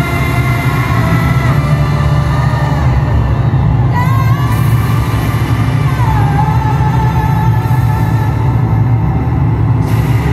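Live concert music played loud through an arena PA and heard from among the audience. A heavy, steady low drone runs under a held lead line, which slides up about four seconds in and glides down in pitch about six seconds in.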